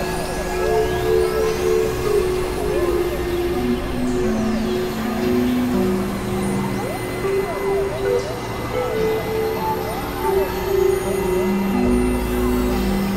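Dense layered experimental electronic music: stepped synth notes moving over a steady drone, with sweeping pitch glides above and a noisy rumble below.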